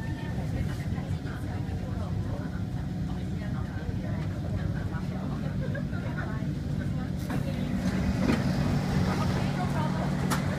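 Inside a Kawasaki C151 metro train pulling into a station and stopping: a steady low hum from the train, with passengers talking in the background. From about seven seconds in the sound grows a little louder and hissier as the doors open onto the platform.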